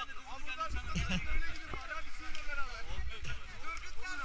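Several people talking and calling out over each other at moderate volume, with a low rumble underneath.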